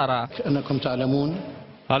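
A man speaking in a low voice, with long drawn-out syllables, trailing off about a second and a half in.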